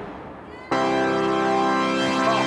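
Live amplified rock band: the music falls away to a brief lull, then about 0.7 s in a loud held chord of steady stacked tones comes in and sustains, with no drums.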